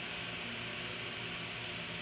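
Steady room noise from an electric stand fan running, an even whirring hiss with a faint low hum.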